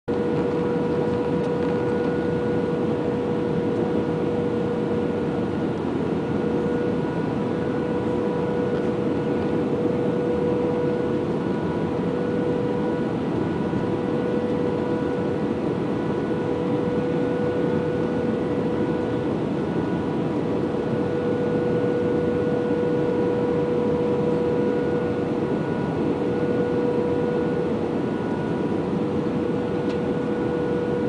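Airbus A320 passenger-cabin noise in flight: a steady drone of engines and rushing air, with a constant hum running through it.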